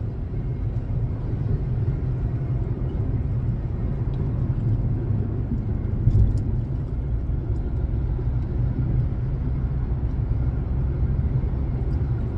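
Steady low rumble of a moving car's road and engine noise heard from inside the cabin, cruising on a highway, with one brief louder thump about six seconds in.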